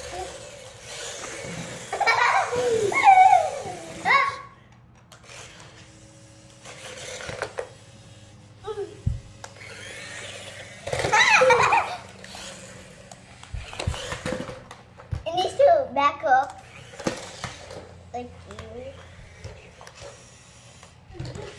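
Children talking and laughing in short bursts, over a low steady hum.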